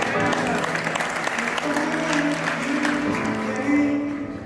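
Upright piano playing, with an audience applauding and voices shouting over it.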